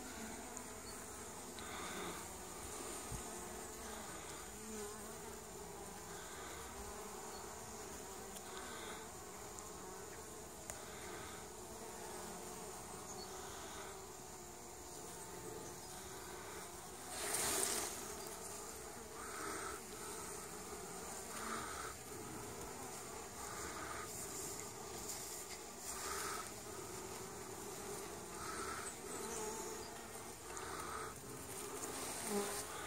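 Honeybees buzzing at the hive entrance: a faint steady hum that swells briefly every few seconds as bees fly close. A brief louder rush of noise a little past halfway.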